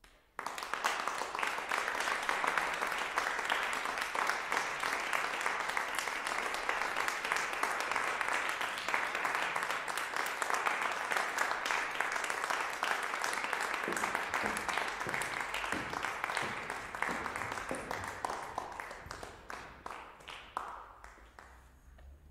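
Audience applauding: clapping breaks out suddenly, holds steady and full, then thins to scattered single claps and fades out near the end.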